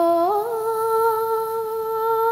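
A woman's voice humming or singing one long held note, which steps up in pitch shortly after the start and then holds steady.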